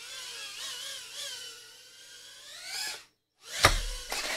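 HappyModel Mobula6 2024 tiny whoop's brushless motors and props whining, the pitch wavering with throttle, dipping and then rising before cutting off about three seconds in. A sharp knock follows near the end.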